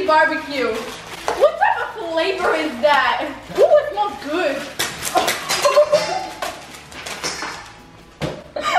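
Girls' voices talking and exclaiming over one another, with a run of sharp clicks about five seconds in as small wrapped hard candies are tipped out of a plastic bag and clatter onto a granite countertop.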